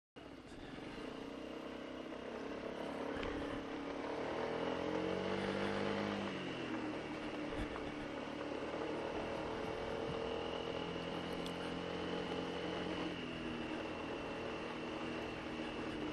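Honda SH150i scooter's single-cylinder engine running as it rides along a gravel lane, cutting in suddenly at the start. The engine pitch rises a few seconds in and eases back around six seconds, then holds steady over a hiss of wind and road noise.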